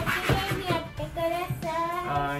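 A child's high voice, sing-song or singing, over light background music.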